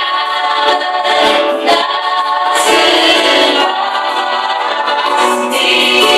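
A group of Paiwan voices singing a worship song together in long held notes that shift in pitch every second or so.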